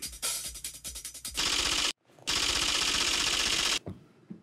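Edited television sound effect: a rapid run of clicks like fast typing, then a loud burst of static-like noise, a brief cut about two seconds in, and a longer static burst that stops abruptly near the end.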